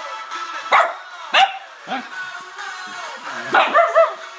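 A dog barking at pop music playing from a laptop speaker: three sharp barks in the first two seconds, then three quick barks in a row near the end.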